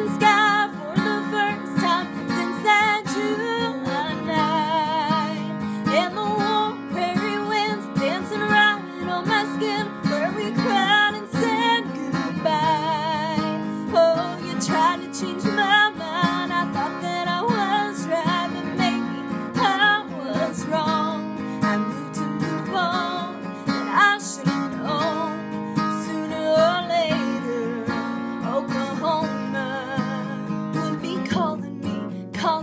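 A woman singing a country ballad with vibrato, accompanied by a strummed acoustic guitar.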